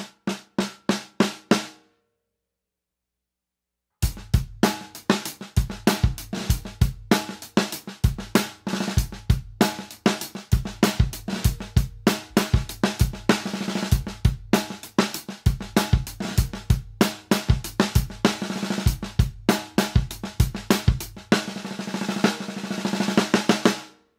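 Snare drum fitted with PureSound Custom Pro 20-strand brass snare wires: a run of single snare strokes, about four a second, then a two-second pause. After that comes a full drum-kit beat with bass drum under the snare, which stops abruptly near the end.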